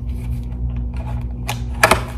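A small paperboard box being handled and opened by hand: light scrapes and clicks, with a louder cluster of sharp clicks near the end, over a steady low hum.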